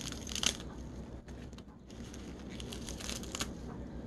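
A spoon tossing chili-seasoned cucumber and onion in a glass bowl, with wet crackling and scraping in two bursts: one at the start and one around three seconds in. Lettuce leaves are being added to the bowl by the end.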